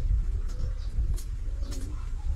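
A Shiba Inu and a small long-haired dog play-fighting, with soft, low grumbling calls over a steady low rumble on the microphone.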